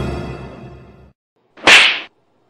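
Dramatic music fading out over the first second, then after a brief silence a single short, sharp swish near the end.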